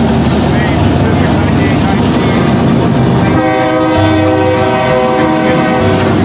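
Diesel freight locomotives passing close by with a loud, dense engine and wheel rumble; from about halfway a locomotive air horn sounds a steady, multi-note chord.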